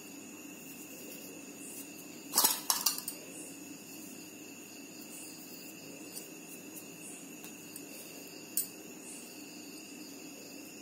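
Light glass clinks: a quick cluster of several about two and a half seconds in, and a single one near the end. Under them is a faint steady high-pitched hum.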